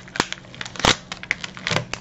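Thin plastic inner wrapper of a chocolate bar crinkling and crackling as hands pull it open, with two sharper snaps near the start and just before the middle. The wrapper is stiff and hard to open.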